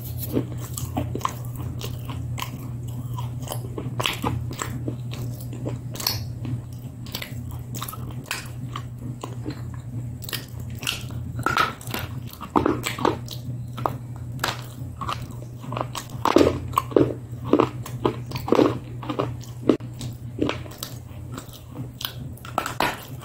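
Close-miked biting and chewing of brittle white sticks: a run of crisp snaps and crunches, louder and closer together in the second half, over a steady low hum.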